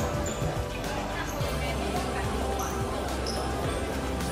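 Background music playing, with indistinct voices and footsteps on a hard floor.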